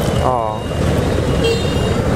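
A motor vehicle's engine running close by, a steady low rumble.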